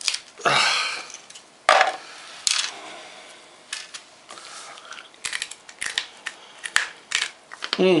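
A very hard homemade ship biscuit (hardtack) being snapped apart by hand over a stainless steel tray: a sharp crack about two seconds in. Later comes a scatter of small clicks and taps as the broken pieces are handled on the metal.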